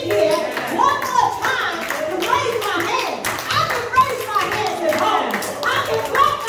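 Hand claps mixed with loud, excited speech, the claps coming irregularly through the talk.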